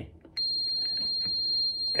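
Handheld fencing go/no-go weapon tester in épée mode giving a steady high-pitched beep, starting about a third of a second in, as the circuit is completed, signalling that the circuit and weapon work.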